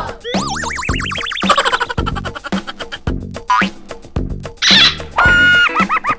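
Cartoon boing sound effects over upbeat background music with a steady beat. A wobbling, rising boing fills the first two seconds, and more wobbling boings come near the end.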